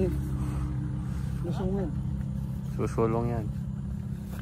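A steady low engine-like drone runs throughout, with a person's voice twice, briefly.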